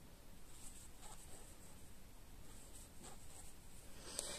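Faint, soft rustling and scratching of yarn drawn through stitches by a crochet hook while single crochet stitches are worked, coming in light brushes at irregular intervals.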